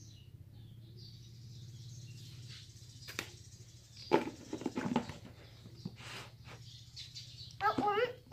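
Handling noise of a plastic tub and its snap-on lid: a few sharp knocks and clatter about three to five seconds in. Faint birds chirp in the background.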